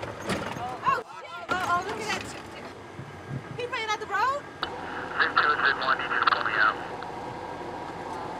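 Voices in a Humvee cabin, then from about halfway a thin, hissy military radio transmission lasting about two seconds: one convoy vehicle calling another to pull it out because it is stuck.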